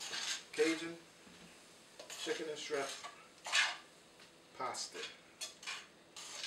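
Metal tongs scraping and clinking against a frying pan as pasta is tossed, in several short strokes with pauses between them, some with a brief ringing squeal.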